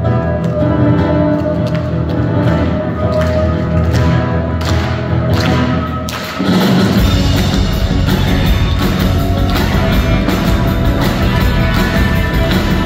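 Live band playing an instrumental passage: a quieter opening led by acoustic guitar, then the full band with drums comes in louder about six seconds in.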